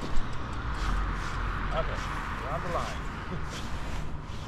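Steady outdoor background noise with a low rumble, and a faint man's voice briefly about two seconds in.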